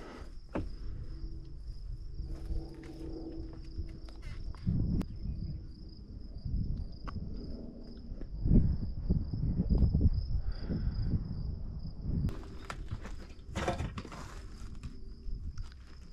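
Footsteps on dry ground and debris, with scattered knocks and clicks, under a steady high-pitched insect buzz.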